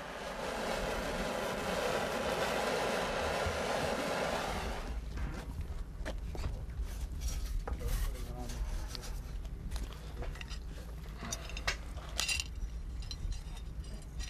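A handheld heat tool runs with a steady rushing noise for about five seconds as it shrinks the waterproof heat-shrink splices on a submersible pump cable, then cuts off. After that come light scrapes and clinks as the cable is handled at the steel well casing, with one sharp click near the end.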